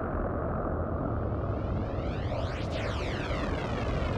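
Film sound effects: a loud, steady rushing rumble with a sweeping, jet-like whoosh that swells toward the middle, like something big rushing past.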